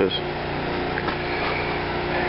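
Generator engine running steadily, a continuous even hum.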